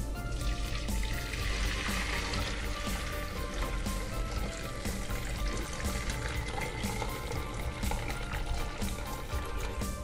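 Chicken stock poured from a pot through a stainless-steel mesh strainer, a steady splashing rush of liquid starting about half a second in, under background music.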